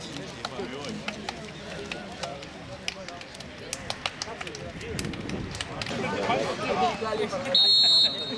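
Voices of players and people around a football pitch, with scattered sharp clicks, growing louder. Near the end comes one short, loud blast of a referee's whistle, signalling the kick-off.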